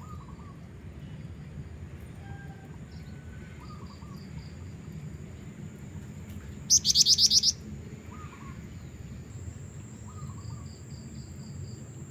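Black-winged flycatcher-shrike (jingjing batu), a female, giving one loud, rapid high trill of about eight notes a little past the middle. Faint scattered chirps come before and after it, over a steady low background noise.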